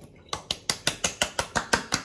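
Quick, even pats of wet hands on a freshly shaved face: a dozen or so sharp slaps, about six a second.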